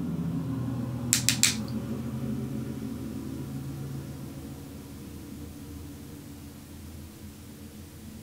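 A low steady hum that slowly fades, with a quick run of three or four sharp clicks just over a second in.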